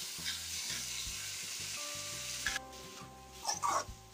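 Onions, green chillies and tomatoes frying and sizzling in oil in an aluminium kadai as they are stirred with a metal slotted spoon. The sizzle cuts off suddenly about two and a half seconds in, leaving a quieter stretch with a few short sounds near the end.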